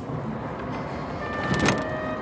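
Steady road and engine noise inside a moving car's cabin, with a few held music notes coming in about a second in.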